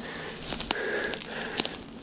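Footsteps pushing through dry bush scrub, with twigs and leaves crackling and a few sharp clicks.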